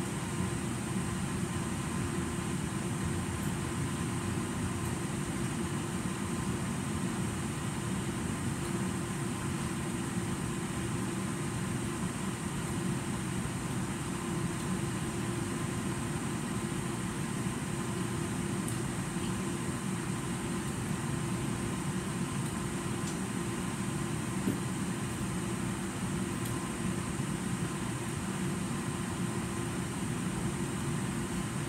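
Steady drone of a ventilation or air-conditioning system, with a low rush of moving air and a faint steady hum that does not change.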